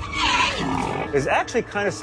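A harsh, snarling roar dubbed onto a computer-animated entelodont as it bares its teeth. The roar is loudest in the first half second and is followed by shorter, lower pitched growl-like sounds.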